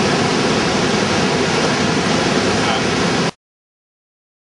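Steady rushing outdoor noise of wind and water around a boat, even throughout, cutting off suddenly a little over three seconds in.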